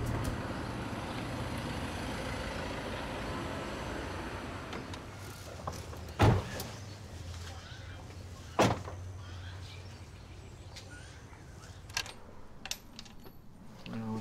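A box van's engine running with a low rumble that slowly fades, then two loud slams of its cab doors being shut, the second about two and a half seconds after the first.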